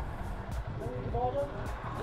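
Motorcycle engine idling with a steady low hum, with faint voices in the background.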